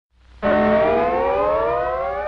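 A long siren-like wail starts about half a second in and rises steadily in pitch, opening a 1940s cartoon's title music.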